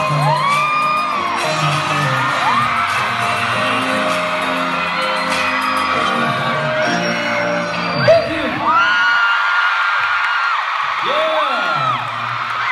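A live pop song playing through a concert PA, with its low end stopping after a short loud hit about eight seconds in. High-pitched screams and whoops from a theatre crowd rise and fall over the music and carry on after it ends.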